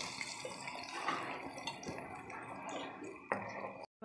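Wet ground green masala paste poured into hot oil in a pan, sizzling and bubbling quietly as it hits the oil, with one sharp click near the end.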